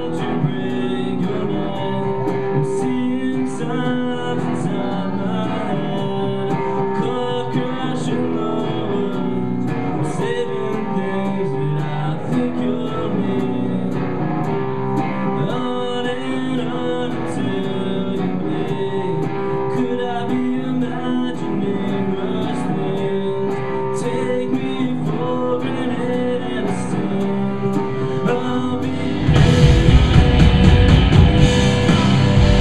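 Live rock band playing a song: electric guitars pick a sustained melody over a quieter backing. A second or so before the end, the full band with drums comes in much louder.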